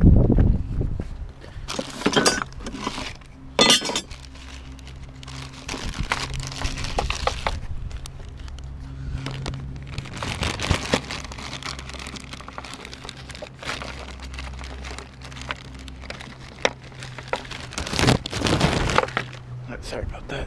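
Metal hand tools clinking and rattling against each other and a plastic tool case as someone rummages through it, with scattered knocks, over a steady low hum.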